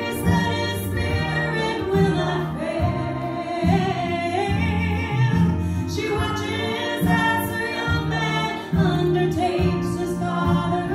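A woman singing a gospel song through a handheld microphone, with instrumental accompaniment carrying a steady bass line under her held, sliding notes.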